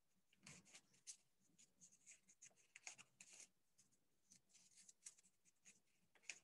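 Near silence with faint, irregular scratching and rustling strokes.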